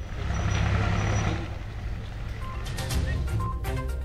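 Road traffic: a heavy vehicle's engine rumbling past, then a run of short, evenly repeated beeps with clicks, like a reversing alarm.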